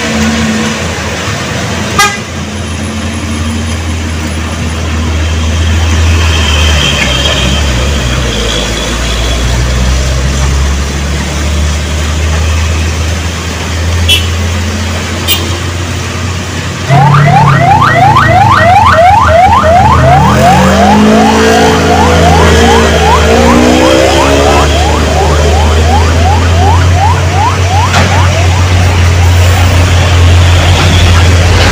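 Truck and car engines running in slow traffic, with horn toots. About halfway through, a louder sound of quick, repeated rising high pitches cuts in suddenly and continues.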